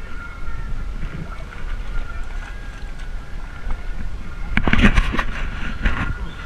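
Steady low wind noise on the microphone over open water, with a faint high steady tone running beneath it. A short, louder burst of noise comes near the end.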